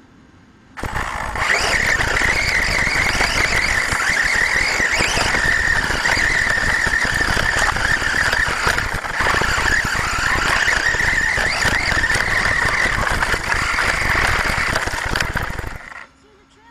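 HPI Savage XS Flux brushless RC truck running away at speed, its motor and drivetrain running hard with a steady high whine. It starts suddenly about a second in and cuts out just before the end. The truck has lost its radio link and the failsafe has not stopped it.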